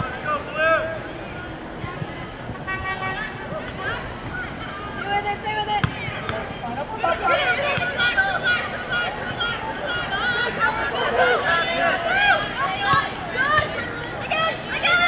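Shouts and calls from many voices overlapping during a soccer match: players on the field and spectators on the sideline. The calling grows busier and louder about halfway through.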